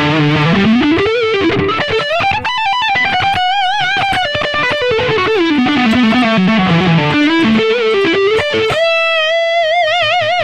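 Electric guitar, a Charvel So-Cal through a Yamaha THR10X amp, playing fast pentatonic triplet runs that sweep down and back up the neck across connected positions. Near the end it settles on a held note with wide vibrato.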